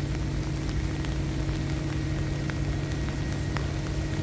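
Hoisting motors lifting a large steel roof truss, giving a steady low hum with a constant tone. When they pull under load they have a different sound.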